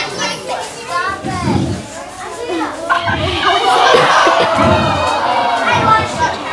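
Audience of young children chattering and calling out, several voices at once.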